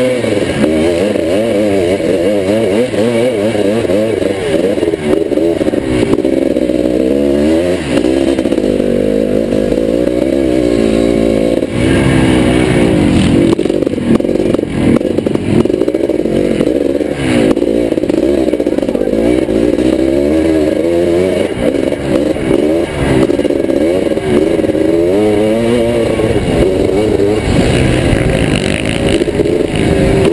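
1981 Can-Am MX-6B 400's two-stroke single-cylinder engine being raced, its pitch rising and falling over and over as the throttle opens and closes and the gears change. The revs climb and drop several times through the stretch.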